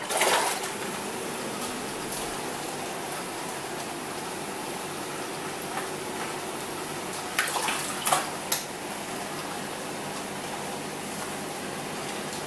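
Aquarium aeration bubbling steadily, air bubbles rising through the tank water, with a few short louder noises around seven to eight and a half seconds in.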